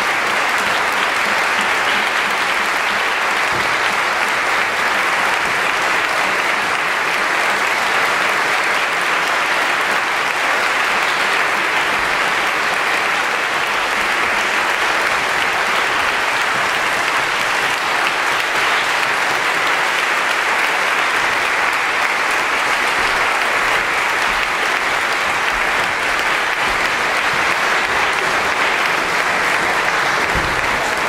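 Concert hall audience applauding steadily, a dense, even clapping that holds at one level throughout.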